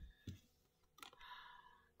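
Faint card handling: a soft thump or two as a hand works the cards on the cloth-covered table, then about a second in a click and a brief rubbing as an oracle card is drawn and slid out.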